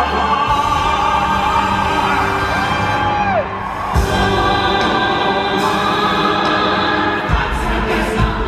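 A live stage show tune: singers and ensemble with a backing band, heard from the arena audience. A held sung note bends down and stops about three and a half seconds in, and after a short dip the band comes back in with a hit.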